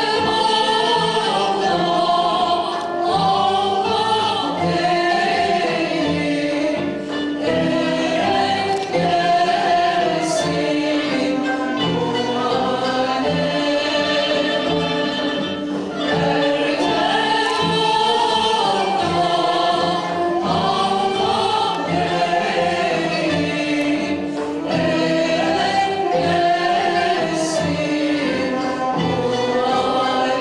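Live Turkish Sufi (tasavvuf) music: several voices, led by women, sing a flowing, ornamented melody together. They are accompanied by a small ensemble of kanun, ney, tanbur and oud.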